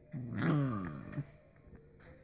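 A dog gives one low drawn-out vocal sound, about a second long, its pitch falling as it goes.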